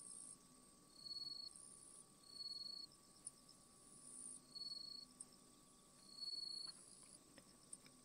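Faint insect calls: short, even-pitched trills about half a second long, repeating every second or so over a higher, steady buzz.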